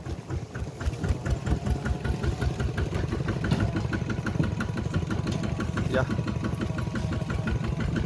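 Two-wheel walking tractor's single-cylinder diesel engine chugging steadily under load as it pulls a loaded wooden trailer, a fast even train of firing pulses that grows a little louder after about a second.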